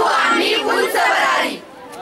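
A group of children shouting together in unison, as in a slogan or chant, stopping about one and a half seconds in.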